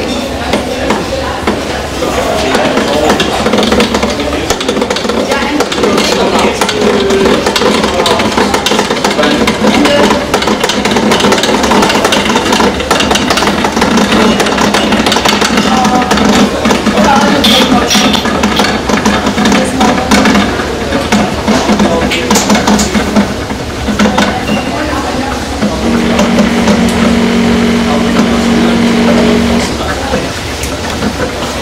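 Kjeldahl steam distillation unit running: steam bubbling and crackling through the alkaline digested sample as the ammonia is driven over into the receiving flask. A steady low hum joins for a few seconds near the end.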